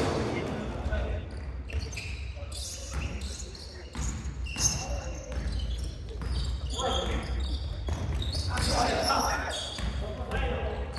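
Basketball game play: a basketball bouncing on a wooden gym floor as it is dribbled up court, with irregular knocks and players' shouts.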